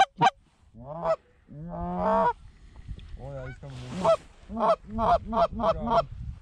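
Short reed goose calls blown to mimic Canada geese: single honks, a longer drawn-out call about two seconds in, then a quick run of short honks near the end.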